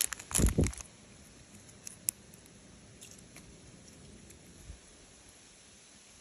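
A small plastic packet rustling and crinkling as it is torn open, in a loud burst within the first second. After that only faint handling noise and a few soft clicks are heard as the yellow putty is pulled out and squeezed.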